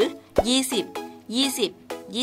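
A woman narrating in Thai over background music.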